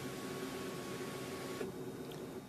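Power moonroof motor of a 2011 Ford Escape running as the one-touch moonroof opens, a steady hum with a faint whine that cuts off suddenly about one and a half seconds in.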